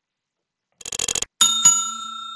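Subscribe-button animation sound effect: a quick run of clicks, then a small bell struck twice in quick succession, ringing on as it slowly fades.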